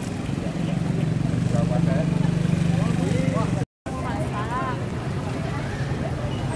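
Motorcycle engines idling with a steady low hum under the chatter of a roadside crowd. The sound drops out completely for a split second a little past halfway, then the crowd voices go on.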